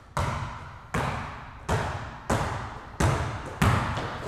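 Basketball dribbled hard on an indoor gym court: about six bounces at an uneven pace, each with a short echo.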